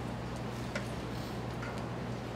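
Room tone in a lecture hall: a steady low electrical hum, with a couple of faint, short clicks.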